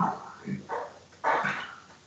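A dog barking a few times, the last call longer than the others.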